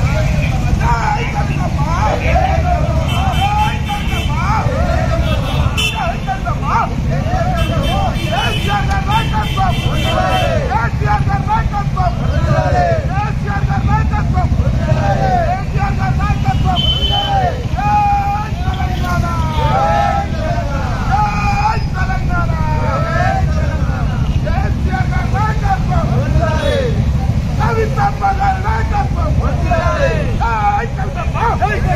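Many motorcycle engines running together in a slow convoy, with a crowd of riders shouting over them. Brief high-pitched tones sound now and then in the first third.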